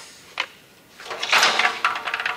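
Handling noise from a plastic shop-vac head unit and canister: a short click, then about a second of scraping and rustling as the parts are moved.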